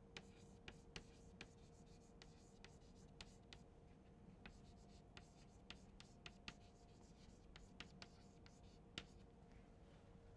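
Chalk writing on a chalkboard, faint: a string of short taps and scratches as letters are written, irregular, several to the second.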